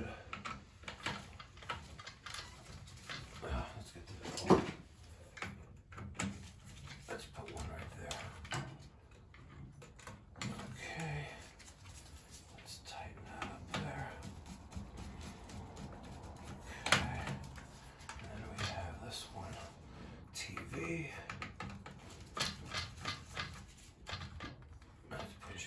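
Small clicks and taps of a screwdriver and wire leads on the terminals of a boiler aquastat relay being wired in. Two sharper knocks stand out, about four and a half seconds in and again around seventeen seconds.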